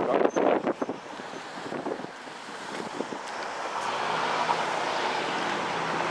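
Street traffic: a passing car's engine and tyres, rising steadily in level through the second half, with some wind on the microphone.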